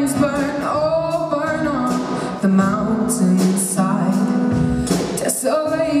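A young male voice singing a slow ballad, accompanied by a strummed acoustic guitar.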